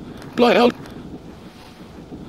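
One short spoken syllable, a clipped word, about half a second in, over a steady faint rush of windy background ambience from the film soundtrack.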